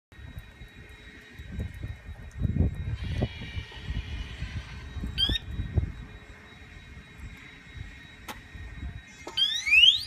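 Automatic fold-down parking bollard: a short beep about five seconds in, then in the last second its tamper alarm sets off as the bollard is pushed, a loud, high siren tone sweeping upward. Low rumbling runs under the first half.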